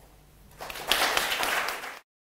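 Audience applauding, starting about half a second in and cut off abruptly at the end.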